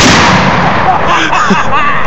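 Rapid bump-fire burst from a .308 rifle that stops just after the start, its echo dying away over the next half second. Voices break in about a second in.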